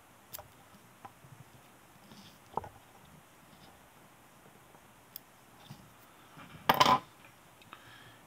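Small clicks and taps of fly-tying tools and the vise being handled: a few faint scattered clicks, a sharper one about two and a half seconds in, and a short louder rustling clatter about three-quarters of the way through.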